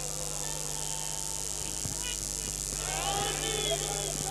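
A lull with a steady high hiss and a low electrical hum, and faint voices from the large seated crowd starting about three seconds in.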